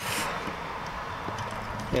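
A few faint clicks of hands handling the wires and a plastic wire nut in a metal outlet box, over steady background noise.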